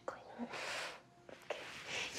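Quiet whispering: a woman's soft, breathy voice in two brief stretches, about half a second in and again near the end.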